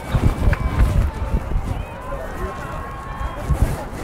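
Faint, distant voices of players, coaches and spectators across an open football field, under an uneven low rumble on the microphone.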